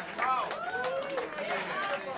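People's voices talking and calling out over general chatter in a crowded club, with no music playing.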